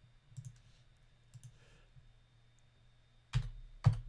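Computer mouse clicks and keyboard keystrokes: a few faint clicks, then two sharper, louder clicks near the end.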